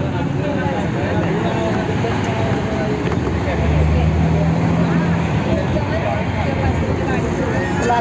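Steady road and engine noise inside a moving vehicle at highway speed. People's voices are talking over it throughout.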